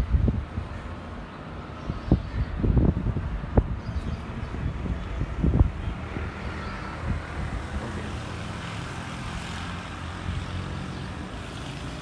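Outdoor wind rumble with a steady low hum of distant engine noise, and several short knocks in the first half.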